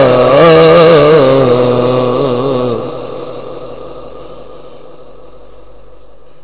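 A Qur'an reciter's voice chanting melodically through a microphone and loudspeakers, holding a long wavering note that ends about three seconds in. Its echo then fades away slowly into a faint steady hum.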